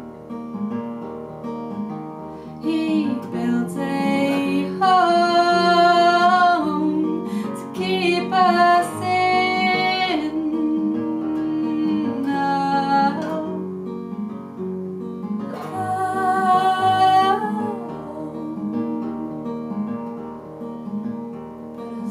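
Acoustic guitar played as a steady folk accompaniment of picked notes, with a woman's voice singing four long, held phrases, the last ending a few seconds before the end.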